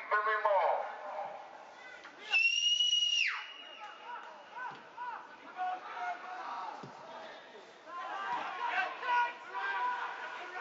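A referee's whistle blown once, about two seconds in: one shrill steady blast of about a second that drops away sharply at the end. Voices call out across the pitch before and after it.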